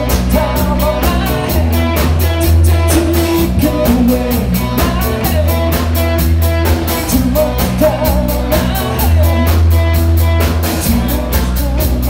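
Live rock band playing: electric guitar, bass guitar and drum kit keeping a steady beat, with a lead vocalist singing over them.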